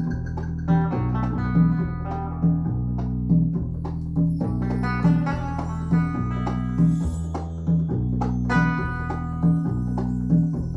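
Music played from a vinyl record on a Rega P2 turntable through an SLAudio RIAA phono stage and floor-standing hi-fi loudspeakers, with a strong low beat a little faster than once a second.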